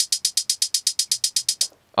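Electronic hi-hat roll from the Novation Circuit Tracks drum track playing on its own: rapid, even ticks, about a dozen a second, that stop shortly before the end.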